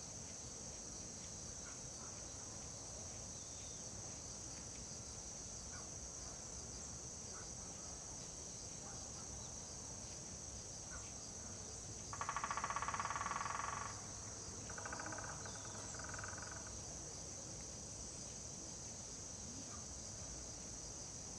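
Steady, high-pitched chorus of autumn crickets. About twelve seconds in, a louder buzzy call cuts across it for about two seconds, then a fainter one follows.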